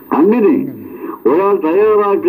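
Speech only: a man talking in Malayalam, in short phrases with a brief pause in the middle.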